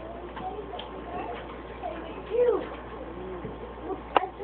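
A person's voice making short wordless hums or murmurs that rise and fall in pitch, the loudest about halfway through.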